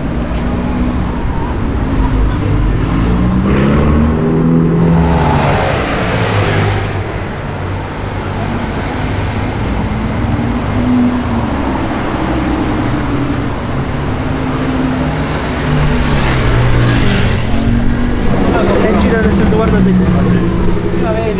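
Supercar engines accelerating past in street traffic, their pitch rising and falling. There is one main pass a few seconds in, and a louder one near the end.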